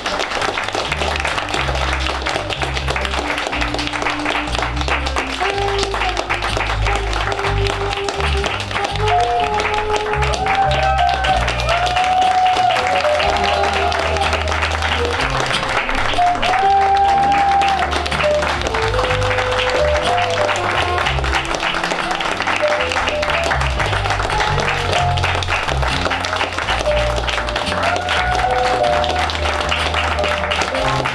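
Applause from an audience and the cast over music with a steady bass line and a melody.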